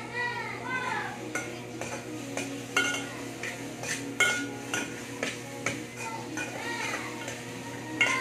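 Metal spoon clinking and scraping inside a cooking pot on a portable gas stove: a run of sharp, irregular clinks, the loudest about three and four seconds in, over a steady low hum.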